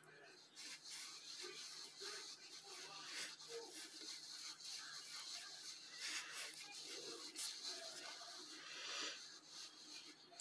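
Faint scratching and rustling of cotton yarn being drawn through and worked with a crochet hook, over a low steady hum.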